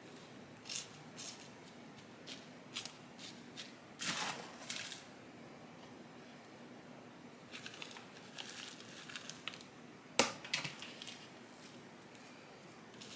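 Chunky potting mix scooped into a plastic pot and pressed in by fingers: scattered short rustles and crunches, a longer pour about four seconds in and a sharper, louder one about ten seconds in.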